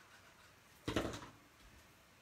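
A short knock about a second in, over quiet room tone: something handled or set down on a hard work table.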